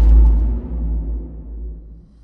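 Outro logo sting: a deep, low boom ringing out and fading away over about two seconds.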